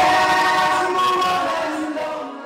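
A crowd singing together with long held notes, possibly over music, slowly getting quieter.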